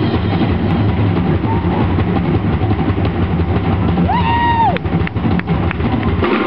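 Live rock band playing loud, drum kit over a dense, heavy low rumble. About four seconds in, one held note slides up, holds and slides back down, followed by a few sharp drum strikes.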